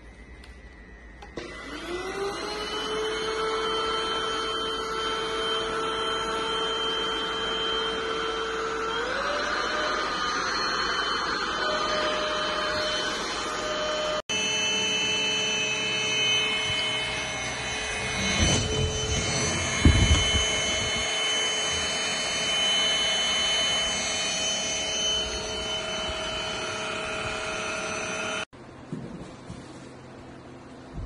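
Cordless stick vacuum cleaner motor spinning up with a rising whine, running steadily, then speeding up to a higher pitch. A second cordless stick vacuum then runs with a steady whine, with a few knocks partway through.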